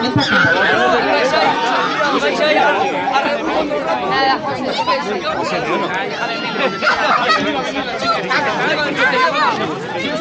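A small crowd of children and adults chattering, many voices talking over one another.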